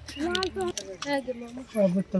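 Voices talking, quieter than the main speaker, with no other sound standing out.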